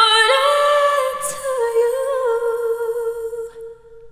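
A woman singing a long held closing note that steps up in pitch early on, drops a step about a second and a half in, and fades out near the end.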